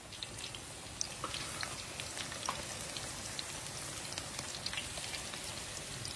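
Food frying in hot oil: a steady sizzle with scattered sharp crackles.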